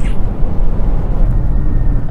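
Steady low rumble of a car heard from inside the cabin: engine and road noise.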